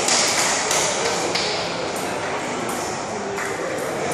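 Table tennis ball clicking: a string of light, irregularly spaced hits and bounces of the celluloid ball on the table and paddles, over steady chatter from spectators in a large hall.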